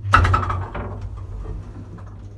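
A 1950s–60s Sabiem traction elevator starting off: a loud clatter as it sets into motion, then a steady low hum as the car travels.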